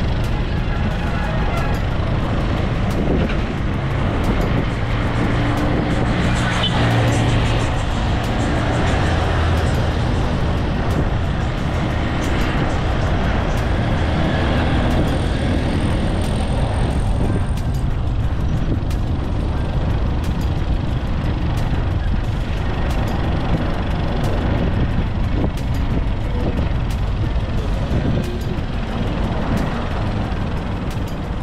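Busy road traffic, with trucks and cars driving past and a continuous engine rumble. A heavier vehicle is loudest about six to ten seconds in.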